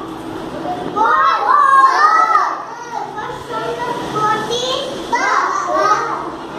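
A young child's voice speaking in short, high-pitched phrases, the loudest stretches about a second in and again near the end, with other small children's voices around it.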